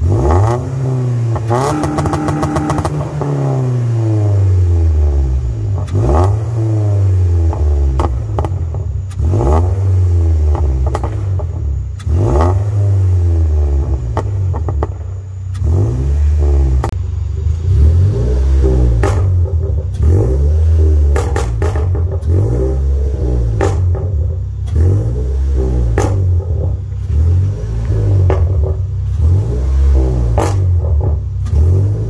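Toyota Corolla hatchback's 2.0-litre four-cylinder (M20A-FKS) being revved over and over while parked, the pitch climbing and falling about a dozen times. It crackles and pops, most densely in a quick stutter about two seconds in, from a stage 2 pops-and-bangs tune.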